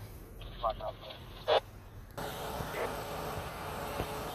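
Short chirps and a loud burst of two-way radio scanner audio. About two seconds in, the sound breaks off abruptly into steady outdoor background noise.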